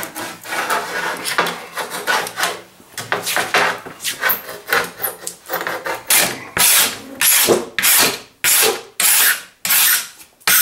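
A hand blade scraping cured polyurethane glue foam off the edge of a cedar picket and its steel insert. The strokes are uneven at first, then settle for the last four seconds into short, regular strokes about two a second.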